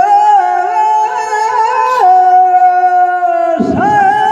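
A man's voice singing long, drawn-out held notes of a Rajasthani Teja gayan folk song into a microphone. The pitch steps to a new note about halfway through, and there is a brief break near the end.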